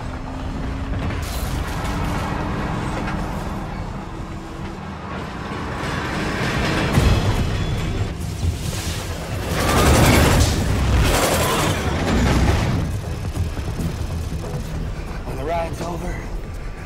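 Film soundtrack: music over a heavy low rumble, with a slowly rising tone early on and loud swelling surges about seven and ten seconds in.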